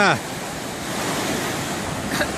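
Surf from a rough sea breaking and washing up a sandy beach, a steady rush of waves.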